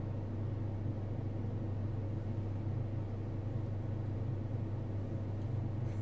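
A steady low machine hum that holds level and pitch throughout, with a faint hiss above it.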